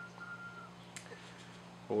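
Quiet room tone with a steady low hum. A faint thin whistle-like tone fades out in the first part, and a single click comes about a second in.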